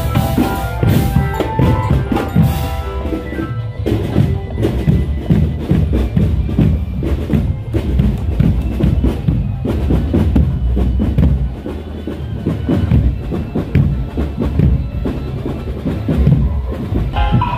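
Marching drum band playing: deep bass drums and snare drums beat a continuous marching rhythm. Over the first few seconds a melody of held notes plays above the drums, then the drums carry on alone.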